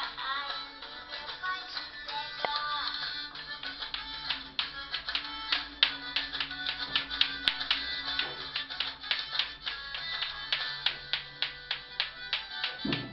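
Bati-bati clacker toy, two small balls on cords, knocking together in sharp irregular clicks, several a second and busiest in the second half, over background music.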